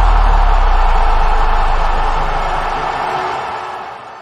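Produced sound effect for an animated quiz title graphic: a deep bass rumble under a dense hissing wash, left ringing from a hit just before, fading away near the end.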